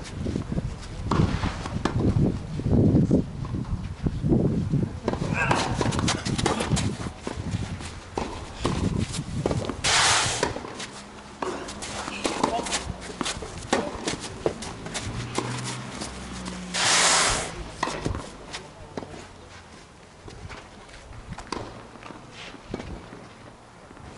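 Tennis rally: racket strikes on the ball among players' running footsteps and shoe scuffs on the court, with two longer scraping slides, one about ten seconds in and one about seventeen seconds in.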